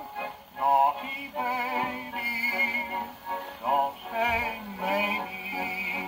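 A 1929 78 rpm record of a dance-band song played on an acoustic phonograph, a male voice singing with vibrato over the band.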